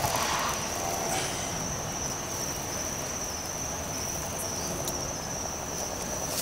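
Crickets trilling at night in one steady, high-pitched tone, over a faint background hiss.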